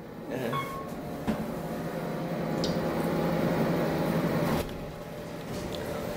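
Otis elevator car travelling between floors: a steady mechanical hum that builds slowly, then cuts off suddenly about three-quarters of the way through as the car stops at the floor. A brief high tone sounds about half a second in.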